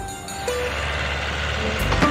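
Cartoon bulldozer engine sound effect: a steady low rumble that starts about half a second in, under background music.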